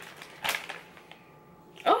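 A plastic dog-treat pouch rustling and crinkling as it is opened, with a short sharp burst about half a second in.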